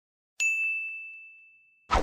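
A single bright ding sound effect, as for a map pin dropping: one clear high tone struck about half a second in and fading out over about a second and a half.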